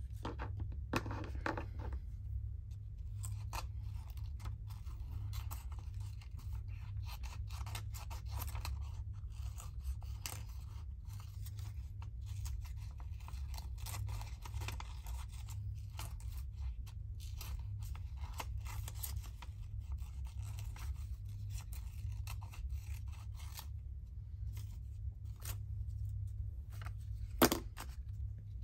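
Small scissors snipping around a printed image on a paper sheet, fussy-cutting: a long run of quick, short snips and paper rustle, over a low steady hum.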